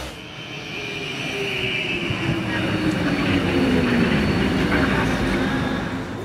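Electric tram pulling in to the platform and slowing to a stop: a falling motor whine over rolling noise that grows louder toward the middle and then eases.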